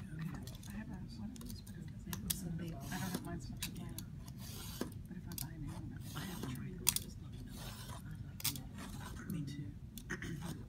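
Utility knife blade scoring binder's board along a metal triangle, a scratchy cut drawn in short passes, with scattered clicks and knocks of the blade and metal triangle on the cutting mat.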